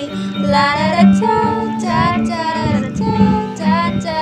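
Female voices singing a pop melody, accompanied by a strummed acoustic guitar.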